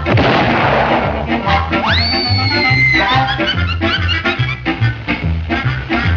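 1930s cartoon orchestra score with a swing beat. An explosion sound effect lands right at the start and dies away over a second or so, then a whistle rises sharply, holds for about a second and sags slightly before cutting off.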